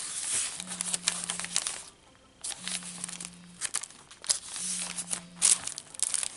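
Paper rustling and crinkling as the pages and pockets of a handmade paper journal are turned and handled. Under it a cell phone buzzes, a low hum about a second long that repeats every two seconds.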